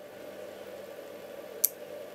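A small black relay on a reed-switch relay module clicks once, sharply, near the end as it pulls in. It only switches on once the supply has been turned up to about 8.5 V, well above the 5 V it is specified for. Beneath it is a faint steady background hum.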